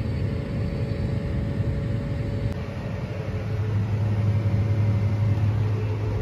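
Steady low drone of harvest machinery running, the engine of a John Deere 9670 STS combine working soybeans, heard alongside the machine and then from inside its cab after a cut about two and a half seconds in.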